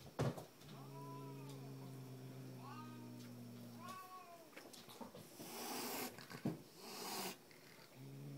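Angry domestic cat growling: a long, steady, low growl that rises and falls into yowls about one and three seconds in, followed by two hisses near the end. A sharp click comes right at the start.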